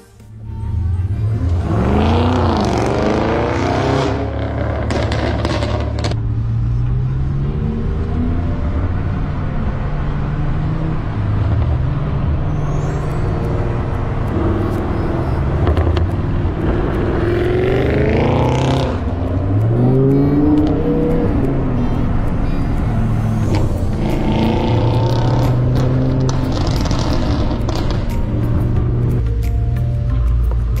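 Performance car engines with catless valvetronic exhausts accelerating hard, the revs climbing in rising sweeps a few seconds in and again past the middle, under background music.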